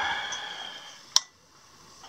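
One sharp click a little over a second in: the switch of a clamp lamp being turned on. Before it, a soft breath fades out, and after it there is quiet room tone.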